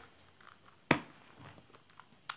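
Rubik's cube being turned in the hands: one sharp plastic click about a second in, followed by a few faint clicks.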